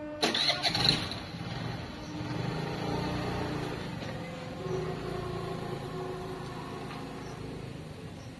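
Motor scooter engine pulling away, starting with a short louder burst, then running steadily and slowly fading as the scooter rides off.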